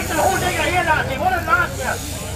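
People talking, with overlapping voices of a crowd in the background.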